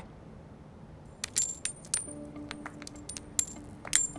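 Several pennies tossed into the air land on a concrete pavement: a quick scatter of sharp metallic clinks and rings starting about a second in, the loudest strike near the end.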